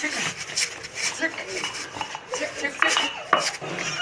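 Clinking and clattering of hard objects, a rapid run of short knocks, with brief snatches of men's voices.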